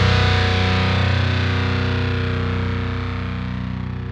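A distorted electric guitar chord held and ringing out, slowly fading as the song ends.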